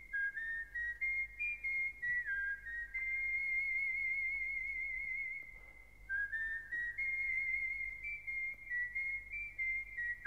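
Solo whistled melody from a film score: a single clear whistled tone moving through short notes and slides, with longer held notes carrying a vibrato. There is a brief pause in the middle, and a faint low hum runs underneath.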